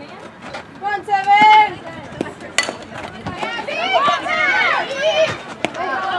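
Softball bat striking the ball with one sharp crack about two and a half seconds in. Spectators and players shout before it, and several voices yell at once after the hit.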